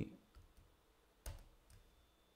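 A few faint clicks from a computer keyboard and mouse, the sharpest a little past halfway, over near silence.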